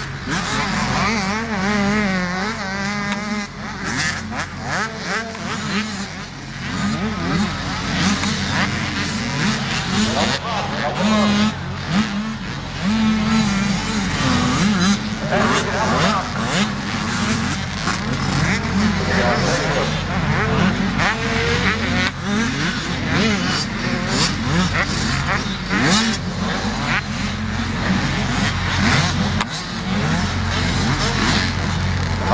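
Motocross dirt bike engines revving, their pitch wavering up and down, over a steady low hum.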